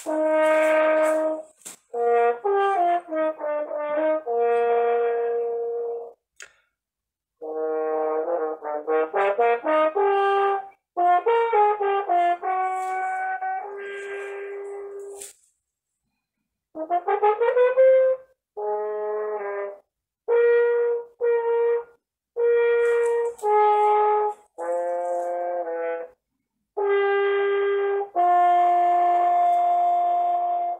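Solo French horn playing a cadenza, heard over a video call. It goes in phrases of quick runs and held notes, with short pauses between them and a fast rising run about two-thirds of the way in.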